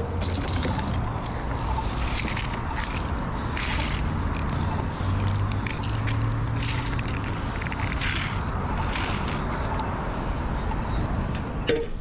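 A push broom's bristles scraping across asphalt, sweeping crash debris in repeated strokes about every half second to a second, over a low steady engine hum.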